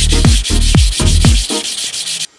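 Sandpaper on a hand sanding block rubbing over a wooden strip, a steady high hiss, with a kick-drum beat of music underneath.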